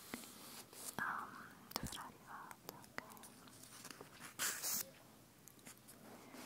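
A woman whispering softly in short breathy snatches, with a few faint clicks between them.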